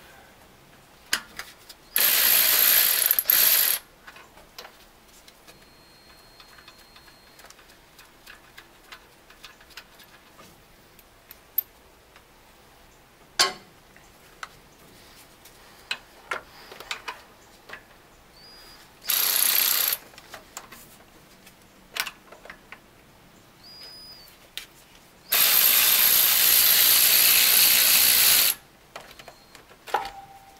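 A ratchet wrench clicks in fast, dense runs while undoing the bolts under a fuel pump: a short run near the start, another in the middle and a longer one of about three seconds near the end. Scattered small metallic clicks and taps of tools on the engine fall between the runs.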